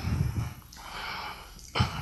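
A man breathing into a close headset microphone: a soft breath hiss lasting about a second in the middle, with low rumbling handling noise around it and a short thump near the end.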